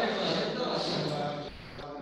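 Speech only: a voice talking, with a short pause about a second and a half in.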